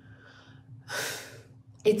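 A woman taking one short, audible breath in through the mouth about a second in, in a pause between words.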